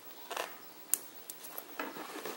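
Pliers bending the end of steel memory wire into a small loop, with the beads on the coil clicking against each other. It comes as a few small metallic clicks and scrapes, the sharpest about a second in.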